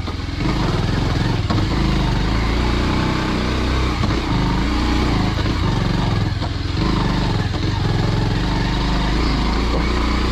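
Bajaj Pulsar 150's single-cylinder four-stroke engine running steadily at low revs while the bike rides slowly over a rocky dirt track, with small dips in throttle.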